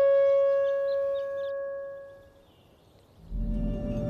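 Drama soundtrack music: a long held wind-instrument note fades away about two seconds in, then a low, dark drone comes in near the end.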